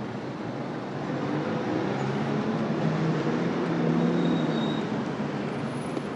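City street traffic noise with a vehicle's engine hum passing, swelling to a peak about four seconds in and then easing off.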